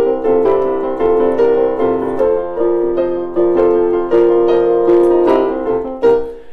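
Digital piano playing a repeating rock and roll pattern over chords, notes struck in a steady rhythm a few times a second.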